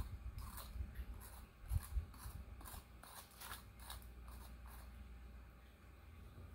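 Volcanic stone face roller being rolled over the skin: faint, irregular clicks, about two or three a second, that die away near the end.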